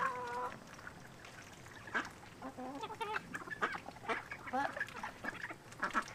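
Domestic ducks quacking in short calls scattered through, with one longer, held call at the very start.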